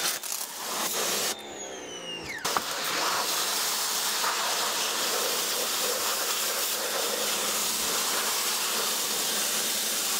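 Electric pressure washer spraying through a wide fan nozzle, a steady loud hiss of water spray. About a second in it stops briefly with a falling whine, then starts again with a click and runs steadily.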